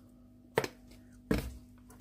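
Two short, sharp knocks of a metal teaspoon against kitchenware, about three quarters of a second apart, as powder is tapped off and the spoon set down; otherwise a quiet room.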